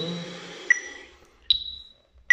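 Metronome beeping at about 75 beats a minute: two short pitched beeps roughly 0.8 s apart, a lower one and then a higher one, each with a brief ring.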